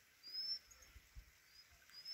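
Faint, short, high-pitched bird chirps, each rising slightly in pitch, heard a few times over a quiet open-air background.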